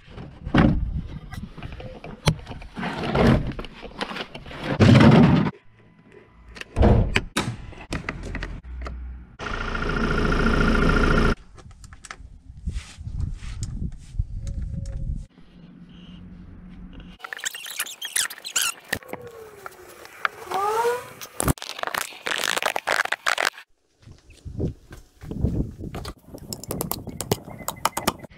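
A string of knocks, clunks and scrapes from hand work under a Ford Transit Custom van: plastic wheel-arch liner and undertray being pulled about, and a ratchet on the underbody bolts. A steady whir lasts about two seconds before the middle, and some squeaks come about two-thirds of the way through.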